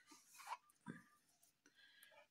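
Near silence: room tone, with two faint brief handling sounds about half a second and a second in.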